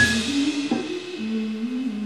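A live rock band stops playing at the very start, leaving a brief fading tail, then a few quiet sustained notes with small steps in pitch.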